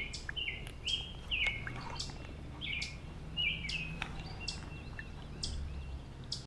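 A bird calling over and over, a short two-part call about every half second, over a faint low outdoor rumble.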